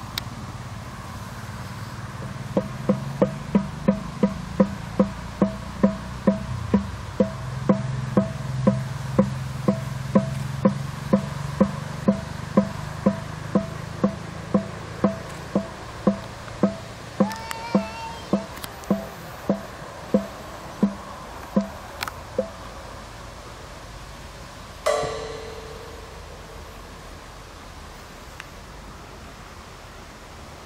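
Evenly paced pitched knocking, like a struck hollow block, about two knocks a second, slowing slightly before it stops. A few seconds later a single strike rings on with a clear tone that fades away.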